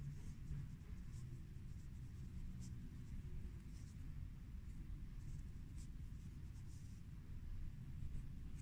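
Faint, irregular scratching and rustling of a crochet hook and yarn drawn through crocheted fabric by hand while weaving in a yarn end, over a steady low background rumble.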